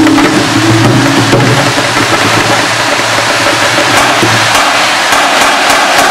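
Marching percussion ensemble playing: a loud, dense wash of drums and cymbals with mallet keyboards, over a low sustained note that fades out about four and a half seconds in.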